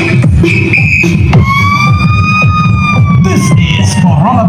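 Loud dance music with heavy, pulsing bass from a large outdoor speaker-stack sound system. About a second and a half in, a long siren-like tone rises slightly and then slowly falls over the music, lasting to the end.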